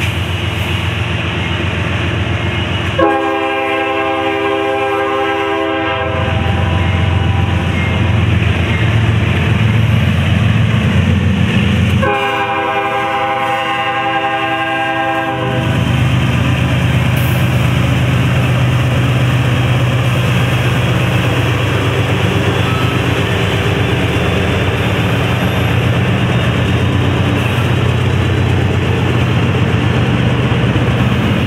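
Freight train passing with its diesel locomotives running loud and steady. A train horn sounds two long blasts of about three seconds each, some nine seconds apart. The locomotives pass close about halfway through, then the covered hopper cars roll by.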